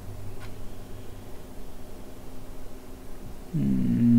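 Quiet electronics-bench room tone with a steady low electrical hum and one faint tick about half a second in. Near the end a man starts a drawn-out voiced 'mmm'.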